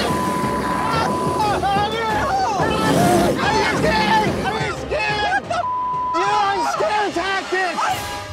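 Men screaming and yelling in panic inside a car. A steady censor bleep covers the shouting during the first second or so and again briefly about six seconds in.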